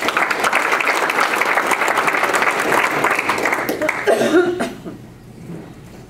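Audience applauding, a dense patter of clapping that dies away about four and a half seconds in.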